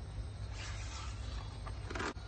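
A page of a paperback picture book being turned by hand: a soft rustle and slide of paper, with a light tap near the end.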